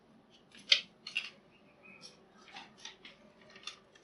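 Light clicks and rustles of small objects and paper being handled and set down on a tabletop, about half a dozen in all, the sharpest just under a second in.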